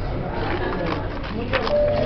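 Sheets of paper being handled and turned, with a few crisp rustles about one and a half seconds in, over room chatter and a steady low hum. A short, steady tone sounds near the end.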